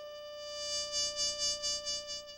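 Jazz trumpet holding one long note with vibrato, swelling about halfway through and starting to fade near the end.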